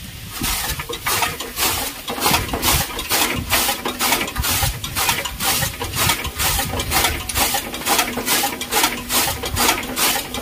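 Hand-cranked chaff cutter with a large iron flywheel chopping straw for fodder: its blades slice through the fed straw in a fast, even chop-chop, about three to four cuts a second.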